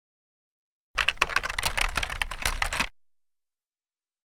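Station-ident sound effect: a dense, fast clatter of clicks like typing on a keyboard, starting about a second in and stopping suddenly about two seconds later.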